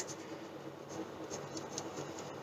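Pen writing on notebook paper: faint, irregular scratching strokes.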